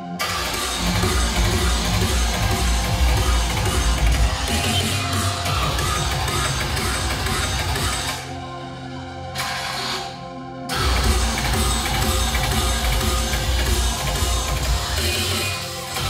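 Techstep drum and bass mixed live by a DJ, played loud over a club sound system with heavy bass. About eight seconds in the treble drops out twice, and then the full mix with deep bass comes back in just before eleven seconds.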